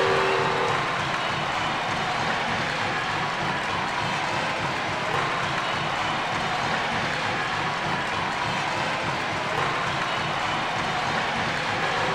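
Steady applause, an unbroken wash of clapping that holds at an even level throughout.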